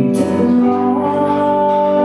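A woman singing live over instrumental accompaniment, holding one long note that steps up in pitch about a second in.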